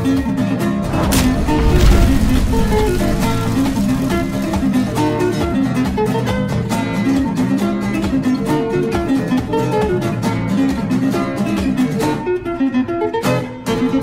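Background music led by plucked acoustic guitar in a Latin, flamenco-like style, with a deep low hit about two seconds in.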